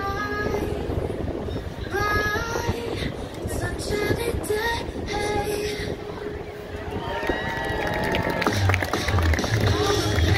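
A song playing: a high voice singing, with a bass line coming in about eight seconds in.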